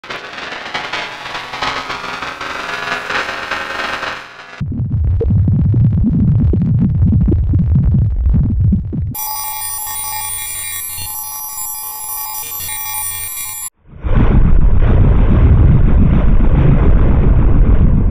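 Heavily distorted, effects-processed audio, harsh and noisy with musical fragments, that jumps abruptly to a differently altered version about every four to five seconds: a filtered, mid-pitched stretch, then a heavy bass-laden stretch, then a thin, ringing high-pitched stretch, then a loud, muffled bass-heavy stretch after a brief cut-out.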